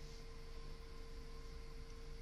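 Faint room tone: a steady low hiss with a thin, unchanging electrical hum and no distinct events.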